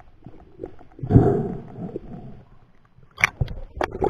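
Muffled sound of water moving around an underwater camera: a surge of water noise lasting about a second starting about a second in, then a few sharp clicks and knocks near the end.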